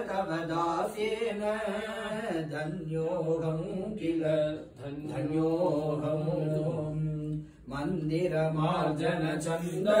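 A man chanting mantras in long, held notes, with short breaks for breath about halfway through and near the end.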